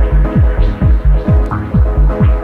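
Electronic dance music from a progressive house DJ mix: a steady four-on-the-floor kick drum at about two beats a second, a short bass note between each kick, and a held chord over them.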